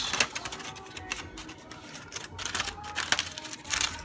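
Aluminium foil covering a braising pan crinkling and crackling in irregular clicks as it is handled to be loosened and lifted.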